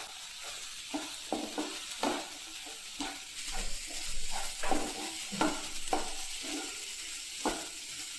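A spatula stirring and scraping a thick spiced masala of peas, tomato and onion around a granite-coated nonstick frying pan, in irregular strokes over a steady low sizzle as the ground spices fry in the fat.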